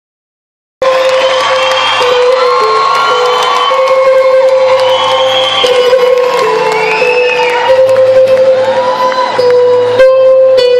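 Live orchestra and band playing a sustained melody line in a large hall, heard from among the audience, with the crowd cheering over it. The sound cuts in abruptly just under a second in.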